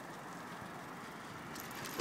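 Steady street traffic noise heard from a moving bicycle, with faint rattling clicks near the end.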